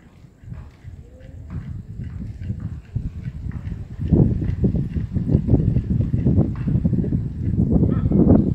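Animal growling in a dog-and-cat standoff: a rough, rapidly pulsing low growl that builds and turns loud about four seconds in.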